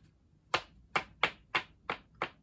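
A person's hands making five sharp cracks in quick succession, about three a second.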